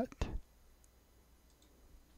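The end of a spoken word, then a few faint computer mouse clicks, single clicks about a second and a second and a half in.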